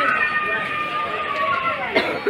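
Indistinct voices of people talking in the background, one of them drawn out into a long, slowly falling tone.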